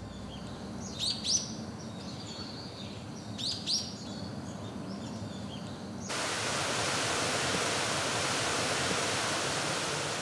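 Forest ambience: a low steady hiss with two short bursts of bird calls, about one second and three and a half seconds in. At about six seconds it switches abruptly to a louder, even rushing noise.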